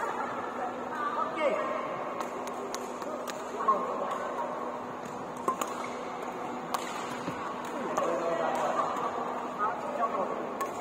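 Badminton rackets striking a shuttlecock during a rally: sharp cracks at irregular intervals, the loudest a few seconds in, echoing in a large hall over a steady murmur of voices from other courts.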